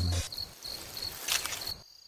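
Crickets chirping, a high thin pulsing trill, with a brief click about two-thirds through. The chirping stops a little before the end.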